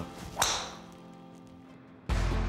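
A golf club strikes a teed-up ball once about half a second in: a single sharp crack that dies away quickly.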